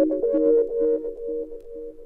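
Trance music played from a 12-inch vinyl record: a synthesizer line of quick repeated notes, fading out in the second half as the track ends.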